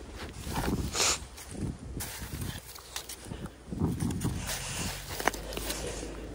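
Packed snow and ice crunching in irregular bursts under boots and gloved hands, with one sharp click about five seconds in.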